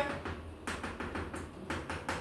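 Chalk writing on a chalkboard: an irregular run of short taps and scratches as the letters are written by hand.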